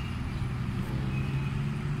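Steady low rumble of road traffic, with a vehicle engine humming at a fairly even pitch.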